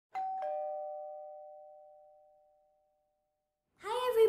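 A two-note ding-dong chime: a higher note struck, then a lower note a moment later, both ringing and fading away over about three seconds.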